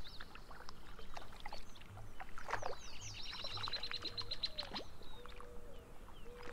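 Several songbirds singing and calling, with short chirps and sweeps. In the middle one bird gives a rapid trill of about a dozen repeated high notes lasting a second and a half.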